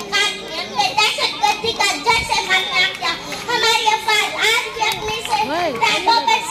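A girl's voice delivering a speech in Urdu in a declaiming tone, with sweeping rises and falls in pitch near the end.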